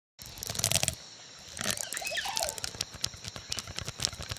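Plastic bendy drinking straws clicking and crinkling as their ribbed flexible necks are bent, in a rapid crackle of small clicks with a few faint squeaks around the middle.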